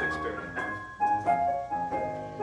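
Keyboard music: sustained piano-like chords, a new chord struck about once a second and held.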